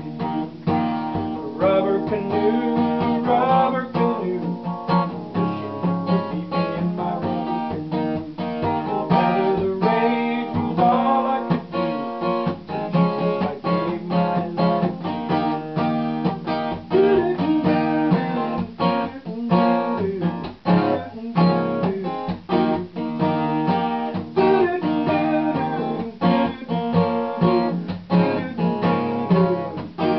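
Acoustic guitar strummed in a steady rhythm, chords ringing through.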